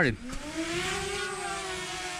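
DJI Mavic Mini's four propellers spinning up for takeoff: a buzzing whine that rises in pitch over about the first second, then holds steady as the drone hovers.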